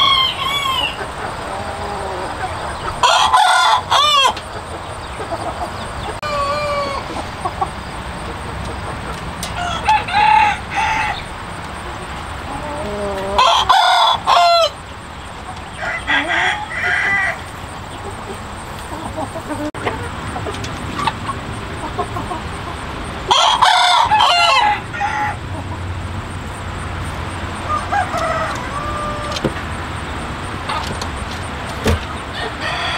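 Hmong black-meat chicken roosters crowing: three loud, full crows about ten seconds apart, with shorter, fainter calls and clucks between them.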